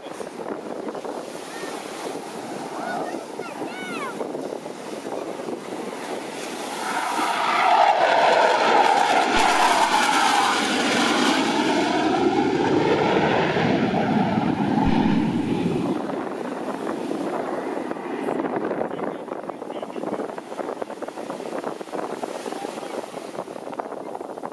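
Jet engine noise from F/A-18 Hornets flying past. It swells about seven seconds in with a sweeping, phasing whoosh, stays loud for several seconds, and falls back about sixteen seconds in.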